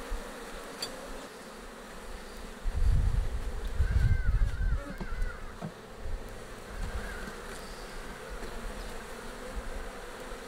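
African honeybees (Apis mellifera scutellata) buzzing steadily around an open hive being worked. A louder low rumble comes in about three seconds in and lasts about two seconds.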